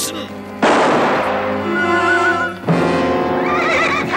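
Dramatic orchestral film score with held chords, struck by two sudden loud accents about half a second in and near the middle. A horse whinnies over it.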